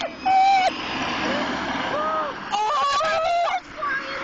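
Girls shrieking and squealing in short high-pitched bursts, one near the start, softer arching cries in the middle and a louder stretch of overlapping squeals just past halfway, over the rushing noise of passing road traffic.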